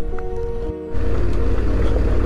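Background music with steady held tones, cut off about a second in by a Yamaha Ténéré 700's parallel-twin engine running on a dirt road: a steady low rumble under a hiss of wind.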